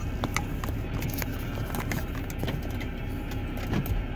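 Steady low road and engine rumble inside a moving car's cabin on new tires, with scattered light clicks and rattles.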